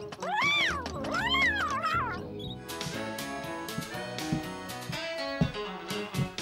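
A cartoon cat meows twice, each call rising and falling in pitch, over country line-dance music; about halfway through, the music comes to the fore with a brisk percussive beat.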